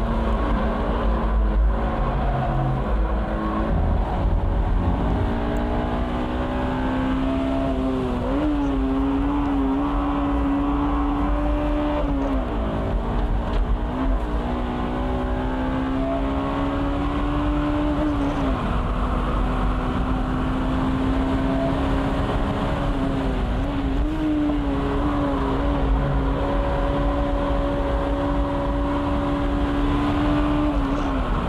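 Honda roadster's engine pulling at high revs on a fast lap, heard from the open cockpit over wind and road noise. The note holds high for long stretches, sags briefly several times where the driver lifts or shifts for a corner, and climbs again.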